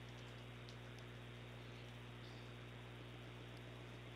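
Near silence on the broadcast feed: a faint steady hum with a light hiss.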